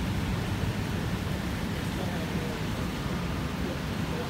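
Steady hiss of a rainy street outdoors, with faint voices in the background.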